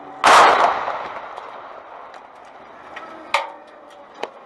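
A car bomb exploding on the road ahead of a moving vehicle: one loud blast about a quarter second in that dies away over a second or so, then a single sharp crack near the end.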